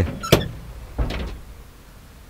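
Pickup truck's cab door being handled: a sharp metallic clack about a third of a second in, then a duller knock about a second in.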